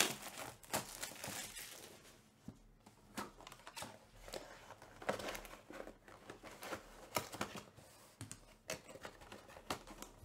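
Plastic wrap crinkling and tearing as a trading-card box is opened, with the densest rustle in the first two seconds. It is followed by scattered scrapes and taps of the cardboard box and lid being handled.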